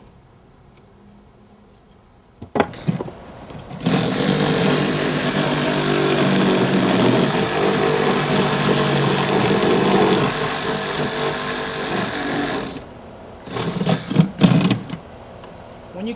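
Reciprocating saw cutting across a wooden soffit. A brief burst, then about nine seconds of steady cutting, then a few short bursts near the end.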